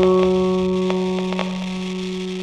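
Soft, slow piano music: a chord struck just before, left ringing and slowly fading, with a few faint ticks over it.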